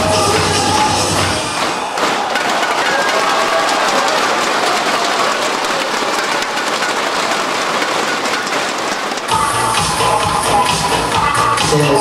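Dance music with a steady beat stops about two seconds in and gives way to audience applause and cheering, with a fast crackle of clapping and inflatable cheering sticks beaten together; music with a beat starts again near the end.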